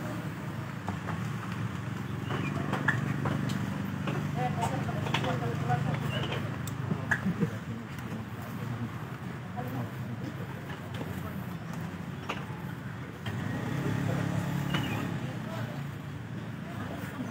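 Indistinct background voices over a low steady hum that swells twice, with a few faint clicks.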